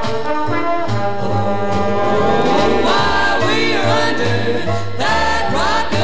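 Swing-era jazz trombone ensemble playing an instrumental passage, several notes sliding up in pitch, over a walking bass line.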